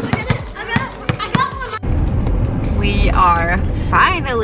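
Children's voices and irregular knocks of play outdoors. Then, after an abrupt cut, a car cabin's steady low road rumble with a young child's high voice.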